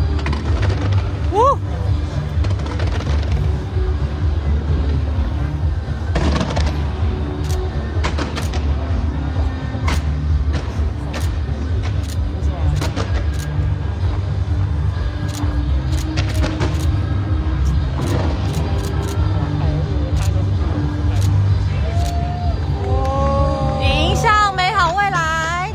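A fireworks display going off: a continuous low rumble of bursts with many sharp cracks scattered through it, and a short rising whistle about a second and a half in. Music and crowd voices run underneath.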